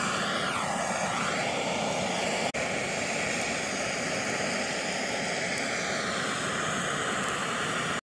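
Handheld trigger-start torch on a MAP-Pro gas cylinder burning with a steady rushing hiss. The flame sound breaks off for an instant about two and a half seconds in.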